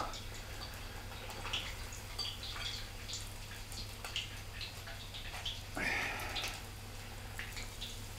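Faint crackle of battered whiting fillets deep-frying in hot oil, with small wet clicks of battered fish being handled and a brief hiss about six seconds in.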